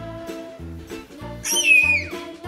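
Children's music with a steady beat, and about a second and a half in a short, loud, high-pitched squeal from a baby that bends down in pitch at the end.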